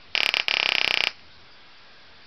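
High-voltage sparks from a homemade 80 kV pulse trigger transformer arcing across a gap: a rapid buzzing crackle in two close bursts lasting about a second in all, then stopping.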